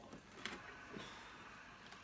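Faint clicks and scrapes of a metal fork cutting through a biscuit on a wooden serving board, with a couple of sharp clicks, the clearest about half a second in.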